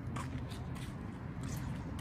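Footsteps on asphalt, faint, about two steps a second, over a low outdoor background rumble.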